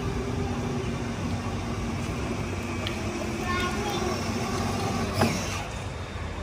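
Children's battery-powered ride-on toy car driving across a concrete floor, its electric motor giving a steady low hum and whine, with a sharp knock about five seconds in. A child's voice is heard briefly.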